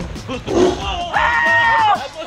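A caged tiger growling at close range, with a short low growl about half a second in. A long, high, held cry follows and falls away near the end. Background music runs under it.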